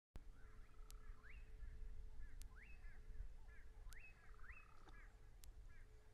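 Faint bird calls at a watering hole: short notes repeated every second or so, each sweeping up and falling away, with a couple of trilled phrases. Under them run a low rumble and a faint steady hum.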